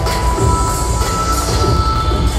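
Entrance music played loud over a hall's PA speakers: heavy bass under a held high synth tone that steps up in pitch about half a second in.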